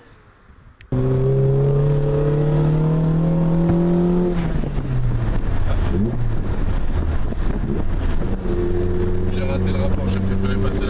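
Fiat Ritmo 130 TC Abarth's Lampredi twin-cam four-cylinder heard from inside the cabin. It cuts in about a second in and pulls with revs climbing steadily, then drops off as the driver lifts for a shift into third that he fumbles with the imprecise gearshift. Near the end it pulls again at a steady pitch.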